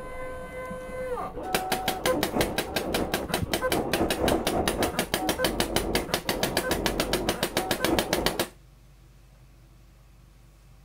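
Paintball gun (a CO2-powered Tippmann 98 Custom) firing in rapid succession, about six or seven shots a second for some seven seconds, then cutting off suddenly.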